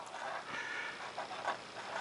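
Fountain pen with a 14ct gold nib scratching faintly across paper in a series of short uneven strokes as a word is written.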